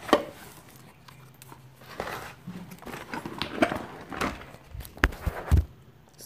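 Tailor's chalk scratching along a wooden ruler on fabric as a line is marked, with sharp knocks near the start and a few low thumps near the end from the ruler and hands on the cutting table.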